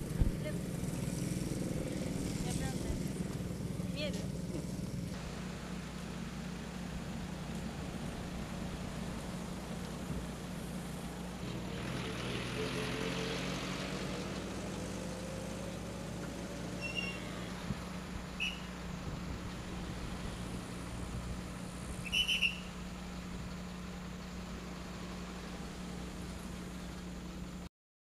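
Outdoor road ambience: vehicles passing over a steady low hum, with one engine note rising about halfway through and faint voices. A few short high-pitched chirps sound in the second half, the loudest about 22 seconds in.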